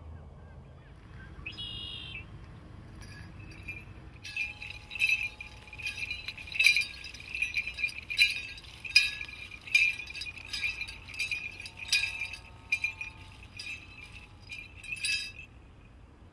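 Bells on a powwow dancer's regalia jingling with his steps, roughly two shakes a second in an uneven beat. The jingling starts about four seconds in and stops just before the end.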